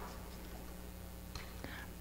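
Quiet pause: faint room tone with a low, steady electrical hum through the microphone, and a faint short rustle about one and a half seconds in.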